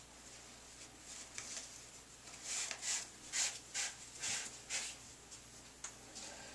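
Hands unwinding yarn from curled synthetic genie locs, the yarn and hair rubbing and rustling: a few faint rustles, then a run of about six short, louder ones in the middle.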